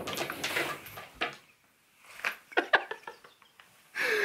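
Handling noise from a plastic paintball pump shotgun being laid down on a cloth-covered table: rustling at first, then, after a short pause, a quick cluster of clicks and knocks a little over two seconds in.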